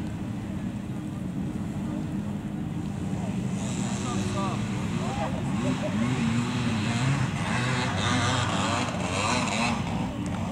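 Classic trials motorcycle engine running steadily at low revs, with people talking over it from about four seconds in.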